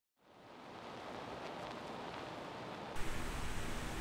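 A steady hiss with no tones in it. It fades in over the first half-second and jumps up in level with a small click about three seconds in.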